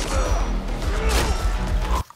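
Action-film fight-scene soundtrack: music with heavy bass and crashing, smacking blows. It cuts off suddenly at the end.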